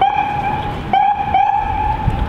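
A loud, steady, high-pitched horn-like tone sounded three times in quick succession: a long blast, a short one, then another long one.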